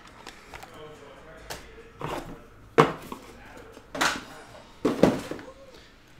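Cardboard trading-card boxes being handled and set down on a table: a few sharp knocks about three, four and five seconds in, with rustling in between.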